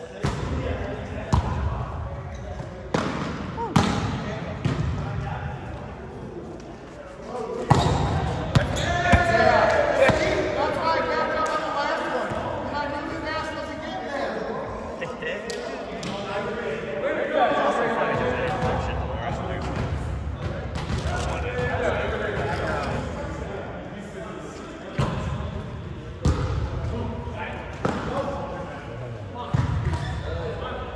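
Volleyballs being struck and bouncing on a hardwood gym floor, sharp echoing smacks every second or two, in clusters near the start, around eight seconds in and again near the end, against the chatter and calls of players in a large hall.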